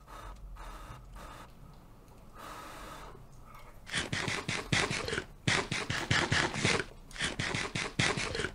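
A man panting and gasping in quick, loud breaths, starting about four seconds in after a quieter stretch, just after tasting the sauce from a spoon.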